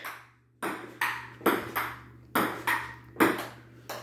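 Table tennis rally: the plastic ball clicking off paddles and the table, about eight sharp clicks at roughly two a second.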